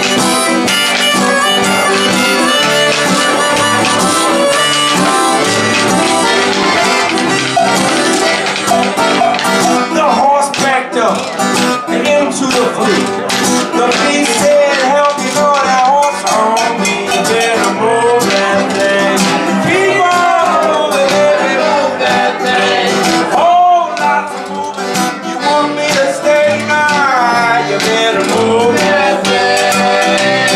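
Live acoustic blues band playing an instrumental passage: piano accordion and strummed acoustic guitar, with a percussionist striking a wooden box drum with a stick. A reedy melody line, most likely harmonica, bends up and down over the top from about a third of the way in.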